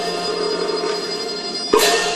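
Teochew opera accompaniment playing a held instrumental passage, several sustained notes sounding together. A sharp percussion strike falls near the end.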